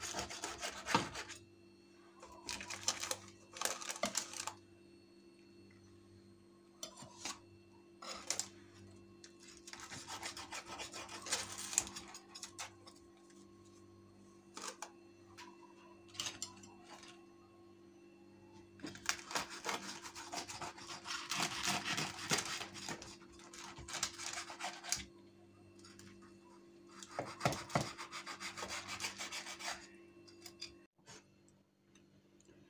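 Kitchen knife sawing through crisp baked lavash rolls on a baking tray: crunchy scraping in a series of bursts with pauses between them.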